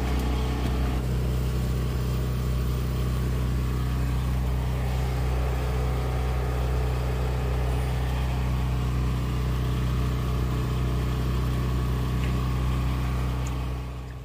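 A motor running steadily at constant speed, giving an even, unchanging low drone.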